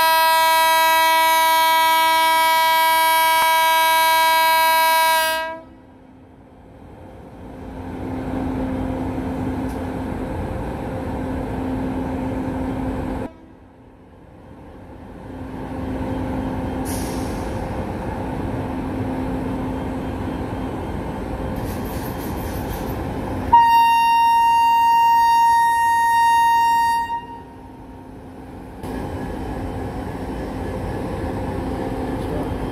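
A WAP-7 electric locomotive's horn sounds one long blast of about five seconds. The rumble of the train pulling away then builds, and a second horn blast of about three and a half seconds comes about two-thirds of the way through.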